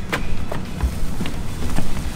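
A steady low rumble with a few light knocks and one dull thud a little under a second in, as a nylon dock line is pulled taut and handled.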